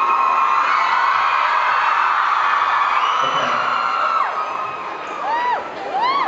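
Concert audience screaming and cheering, with long shrill screams held over the crowd noise, then a few short rising-and-falling whoops near the end.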